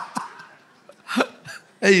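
Laughter into a handheld microphone trailing off in its last short pulses, then a single short, breathy laugh about a second in. Speech begins right at the end.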